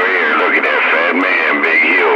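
A man's voice received over a CB radio, thin and narrow in range, with no bass.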